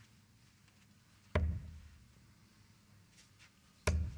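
Two darts striking a Winmau Blade 6 bristle dartboard, each a short sharp thud, about two and a half seconds apart.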